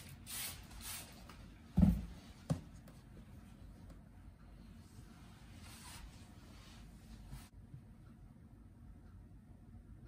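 A hand-pump spray bottle gives two short squirts of mist onto fresh pasta dough, then there is a thump and a lighter knock, the bottle being set down on the countertop. After that come faint rubbing and shuffling sounds as hands fold the pasta sheet over the filling.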